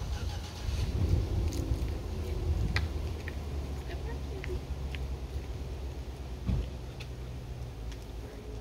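Uneven low outdoor rumble, swelling about a second in and again near the end, with faint voices and a few light ticks.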